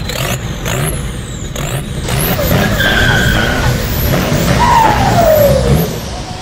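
Car sound effect: engine rumble with tyre screeching, and a screech that falls in pitch near the end.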